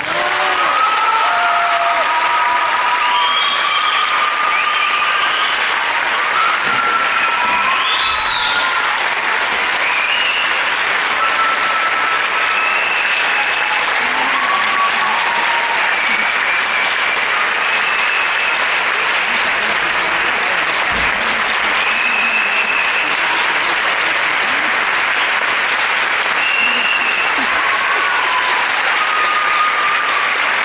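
Auditorium audience applauding, starting as the dance music stops, with voices calling out and cheering here and there over the clapping.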